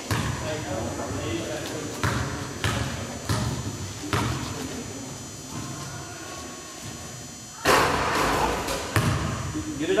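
Basketball bounced on a hardwood gym floor: five separate bounces in the first four seconds, each with a short echo. About eight seconds in comes a louder noisy burst lasting just over a second.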